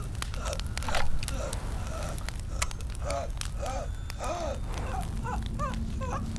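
Fire crackling over a steady low rumble, with a louder swell about a second in. A string of short rising-and-falling vocal sounds comes through the second half.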